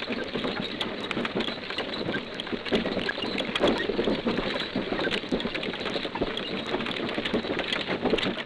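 Artillery caissons on the march: a dense, continuous clatter and rattle of wheels, gear and hooves, played from an old 78 rpm sound-effects disc with a dull, muffled top end.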